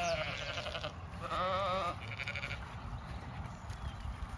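Zwartbles ewes bleating, calling for their evening feed. A quavering bleat fades out about a second in, a second follows at once, and a fainter, more distant one comes just after two seconds.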